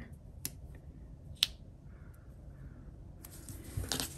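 Hands working paper planner stickers: a few light clicks and taps as a sticker is pressed down, one sharp click about a second and a half in, then paper rustling near the end as the sticker sheet is handled.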